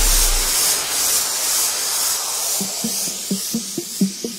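Electronic dance music in a DJ mix, at a breakdown. A loud white-noise sweep fills the top end while a deep sub-bass fades out in the first moments. About two-thirds of the way through, a quick run of short plucked synth notes starts, about five a second.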